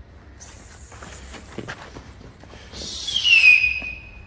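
Faint scattered taps, then a loud whistle that starts near the three-second mark and glides steadily downward in pitch for about a second.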